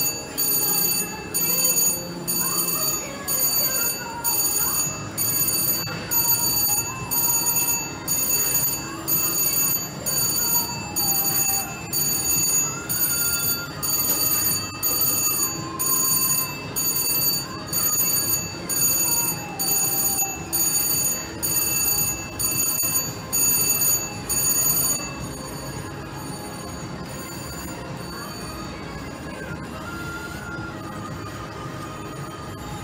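Slot machine's electronic bell ringing in repeated bursts, about once a second, as a win counts up into the credit meter. The ringing stops about 25 seconds in, leaving the lower background din.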